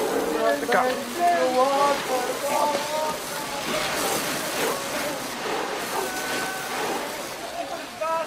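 Fire hose spraying water against the wooden sides of railway freight cars, a steady hiss of spray with a few brief surges. Men's voices call out over it during the first few seconds.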